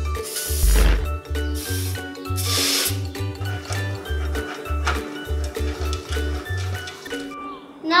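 Upbeat background music with a pulsing bass beat. Near the start, two short hisses about two seconds apart from an olive oil aerosol spray can being sprayed into a metal cake pan.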